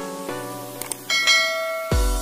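Subscribe-button animation sound effects over a short tinkling jingle of quick notes, with a bright bell-like notification chime ringing out about a second in.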